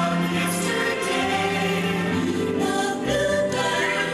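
Romantic stage-show music with a choir singing sustained, slowly changing notes over the accompaniment.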